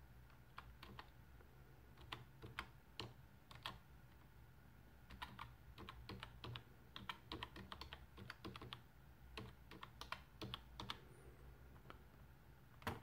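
Faint keystrokes on a computer keyboard as a Wi-Fi password is typed, coming in irregular runs of clicks with short pauses between them.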